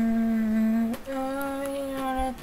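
A man singing unaccompanied, holding one long note, then after a brief break about a second in, a second long note slightly higher.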